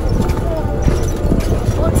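Wind buffeting the microphone and the uneven rumble and knocking of an open golf-cart-style buggy riding over a rough dirt track.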